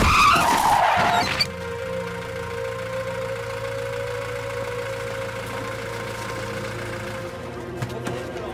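A vehicle braking hard, its tyres skidding and squealing, cut off abruptly about a second and a half in. A low, steady drone of background music follows.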